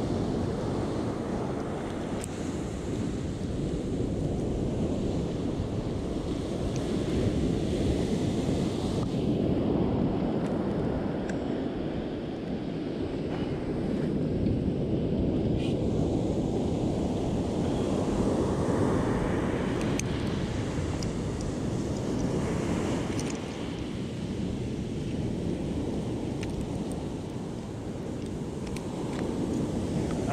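Ocean surf breaking on a sandy beach, a steady wash that slowly swells and eases, with wind buffeting the microphone.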